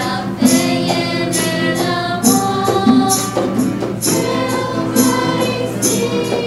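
Christian music: a choir singing over a band, with tambourine-like percussion striking a regular beat.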